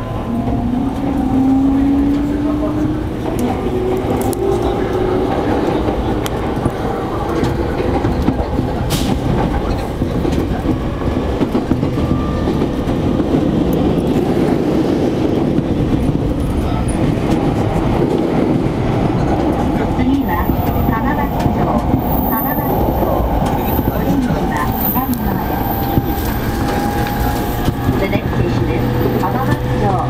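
Yamanote Line electric commuter train heard from inside the car as it pulls out of the station: an electric motor whine rising in pitch as it gathers speed over the first few seconds, then steady running noise on the track.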